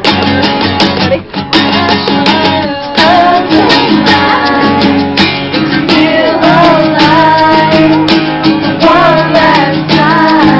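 Two acoustic guitars strummed together in a steady rhythm, with a man singing over them from about three seconds in.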